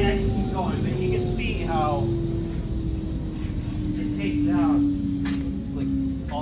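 A large shop machine's motor hum, its pitch falling slowly, over a low rumble, with people talking over it.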